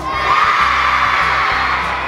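A crowd of children cheering and shouting together, swelling a moment in, over background music with a steady beat.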